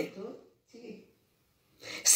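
A woman's voice trails off at the start, then comes a short, faint intake of breath in the pause before she speaks again.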